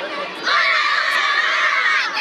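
A group of young children shouting together in one sustained cheer that starts about half a second in and holds loud to the end.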